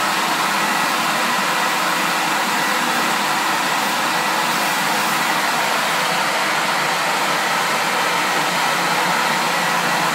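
Rotobrush duct-cleaning machine running, its vacuum motor making a loud, steady noise without change.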